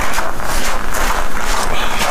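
Footsteps crunching on packed snow over a loud, steady rushing noise.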